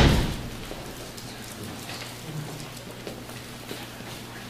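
A sharp thump right at the start that dies away within half a second, then steady room noise with a low hum and a few faint ticks.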